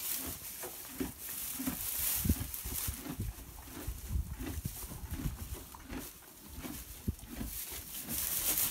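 A horse close by in a wooden stall, heard as irregular low sounds with scattered short thumps.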